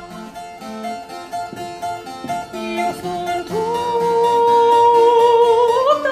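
Harpsichord playing a run of short plucked notes, then a female opera singer comes in about three and a half seconds in with one long held note that rises at the end.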